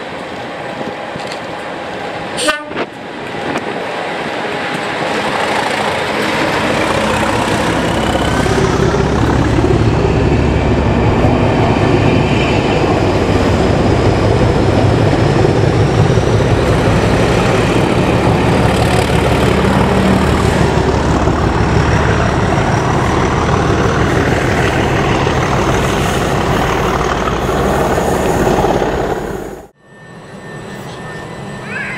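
A pair of Class 37 diesel locomotives with English Electric V12 engines approaching and passing at speed under hard power, hauling a test train. The engine sound builds from about six seconds in and stays loud as the train goes by, then cuts off abruptly just before the end. A brief sharp crack comes about two and a half seconds in.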